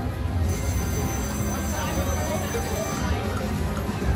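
Casino floor ambience: video slot machine music and electronic tones over background chatter and a steady low hum. A set of steady high electronic tones sounds from about half a second in until about three seconds.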